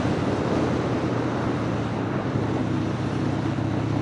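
1999 Harley-Davidson Sportster 1200 XLH's air-cooled Evolution V-twin running steadily under way at road speed, with wind rushing over the microphone.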